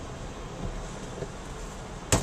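Steady low drone inside a car cabin while the car sits stopped at a traffic light: the engine idling, with a faint even hiss over it.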